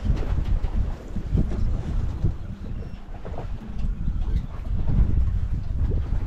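Wind buffeting the microphone aboard a small boat at sea, a gusty low rumbling noise.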